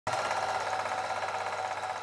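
Film projector clatter sound effect: a steady, rapid mechanical rattle with hiss, which stops abruptly.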